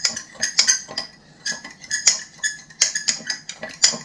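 Metal fork stirring mayonnaise sauce in a ceramic bowl, clinking and scraping against the bowl's sides in quick, irregular taps.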